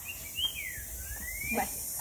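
A single high whistled note that rises slightly, slides down, then glides back up again over about a second and a half. A brief, faint voice sound comes near the end.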